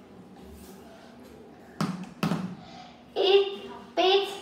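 Homemade drum made from a milk can, struck twice with stick beaters: two knocks under half a second apart about two seconds in. A child's voice follows near the end.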